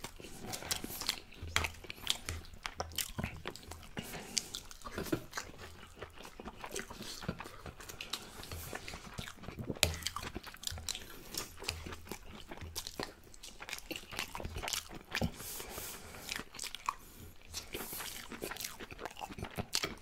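Close-miked open-mouth chewing and lip smacking while eating baked chicken and couscous with vegetables: a continual run of irregular wet clicks, smacks and bites.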